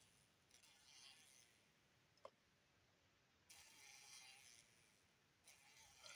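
Near silence: room tone with a few faint rustles and one brief click about two seconds in.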